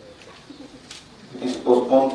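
A man's voice through a microphone: a short pause, then a spoken phrase from about a second and a half in.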